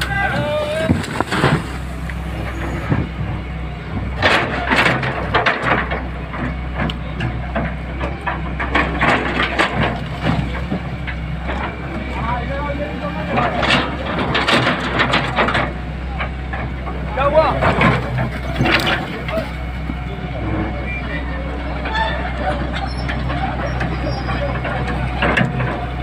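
Hydraulic excavator's diesel engine running steadily as its bucket breaks down brick and concrete-block walls, with several crashes of falling masonry. Men's voices and shouts come and go over it.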